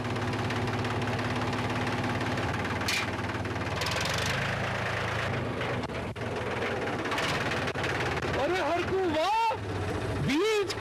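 Tractor engine running steadily at idle. Near the end a man's voice starts over it.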